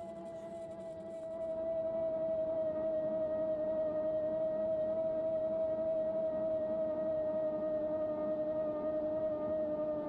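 CYC Photon mid-drive e-bike motor whining under power. It is a steady tone that grows louder about a second in and sinks slightly in pitch as the motor slows.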